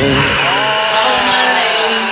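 Mixtape transition: the drums and bass cut out about half a second in, and a buzzy pitched sound glides upward, then holds and sinks slightly toward the end.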